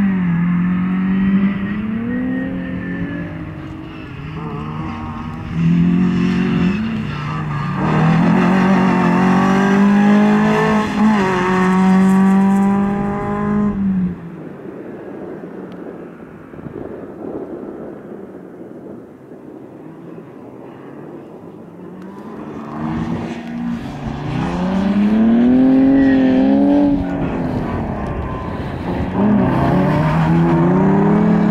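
Skoda Favorit's 1.3-litre four-cylinder petrol engine driven hard at racing revs, climbing and falling again and again as it accelerates through the gears and lifts for corners. The note fades for several seconds in the middle as the car moves away, then comes back loud and revving near the end.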